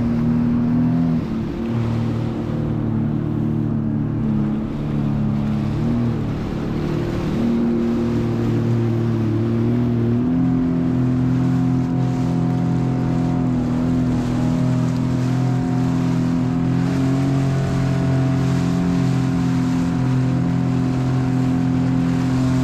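Sea-Doo jet ski engine running under way, its note shifting with the throttle and stepping up about ten seconds in, over the rush of water and spray along the hull. The ski is weighed down by water in its flooded footwells and runs slower than it should.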